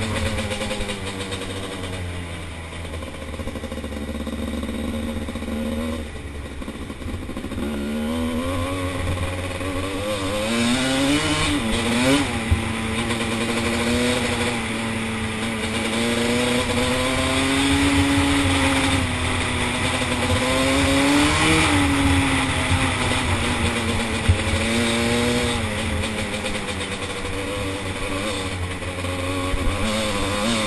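Dirt bike engine heard from the bike the rider sits on, its pitch rising and falling with the throttle and gear changes, with quick rising revs around the middle. A low rumble of wind on the microphone runs underneath.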